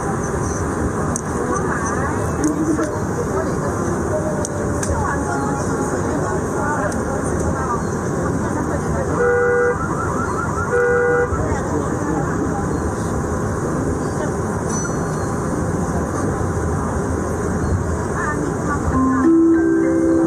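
Steady running noise inside a moving metro train between stations, with faint voices, and two short horn toots about nine and eleven seconds in.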